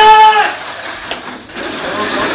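The end of a drawn-out shout of "Go!", then Mini 4WD toy race cars' small electric motors whirring steadily as the cars run the track during a race.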